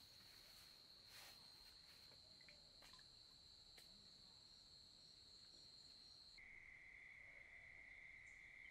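Faint night insects trilling steadily at a high pitch; about six seconds in the trill changes abruptly to a lower, steady pitch. A few faint ticks sound in the first few seconds.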